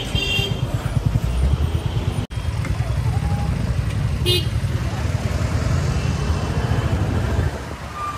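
Motorcycle riding through traffic, heard from a helmet-mounted camera: a steady low rumble of engine and wind on the microphone, with a short high-pitched beep about four seconds in.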